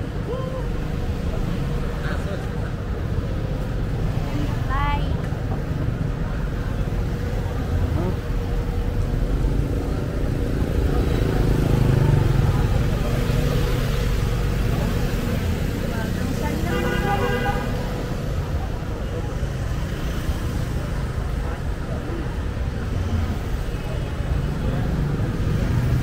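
City traffic heard from a moving motor scooter: a steady rumble of engines and road noise, heaviest in the low end. Two short pitched sounds stand out over it, one about 5 seconds in and one lasting about a second about 17 seconds in.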